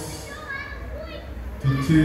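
Children's voices chattering in a large hall during a pause in the sermon; a man's voice over the church PA comes back in near the end.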